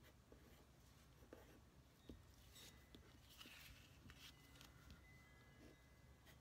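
Faint scratching of a pen writing by hand on paper, with small ticks as the pen touches down between letters.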